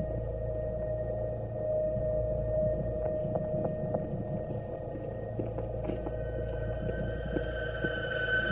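Horror-film sound design: a low, eerie drone with a sustained tone over a deep rumble, and a few faint ticks about halfway through and again near the end.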